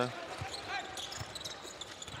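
Basketball being dribbled on a hardwood arena court: a few low, irregularly spaced thuds over faint arena background.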